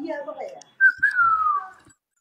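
A person whistling one note that starts high and slides down over about a second.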